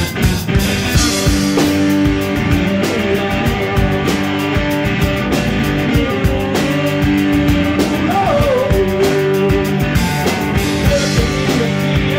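Live rock band playing: electric guitar notes and chords over a busy drum-kit beat, with a few bending guitar lines in the second half.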